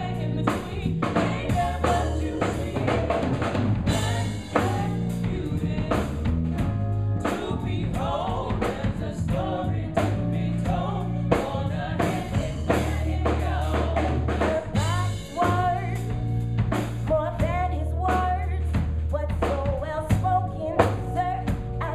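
A live band playing: a singing voice over drum kit, bass guitar and keyboard in a steady groove, with held bass notes and regular drum hits.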